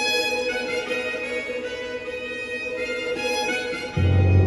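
Two-manual electronic organ playing a slow melody of long held notes over sustained chords in a bowed-string voice.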